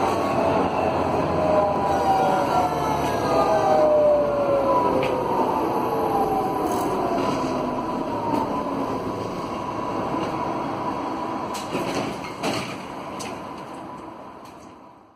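GT8N tram's original GTO traction inverter and motors whining, heard from inside the car: several tones fall steadily in pitch as the tram slows to a stop, with a few clicks near the end.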